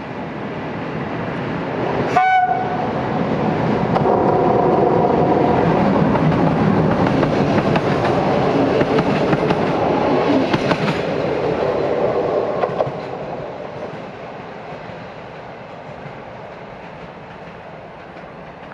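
A passenger train sounds one short horn blast about two seconds in, then passes close by: the rumble and wheel clatter of its coaches build up, stay loud through the middle, and fade away over the last few seconds.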